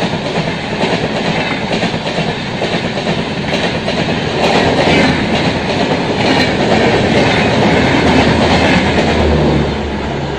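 Indian Railways LHB passenger coaches running past at speed, their wheels clattering over the rail joints in a steady run of clicks. The rumble grows louder about halfway through and drops off just before the end.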